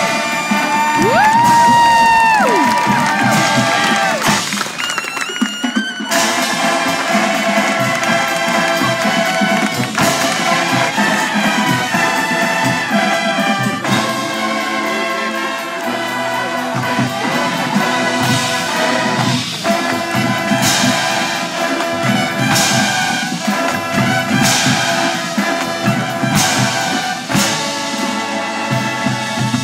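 A drum and bugle corps' horn line and percussion playing live: full, sustained brass chords, with one high horn sliding up to a held note and dropping away in the first few seconds, and a run of cymbal-like crashes later on.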